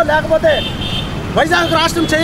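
A man speaking, with a short pause about half a second in, over a steady low background rumble.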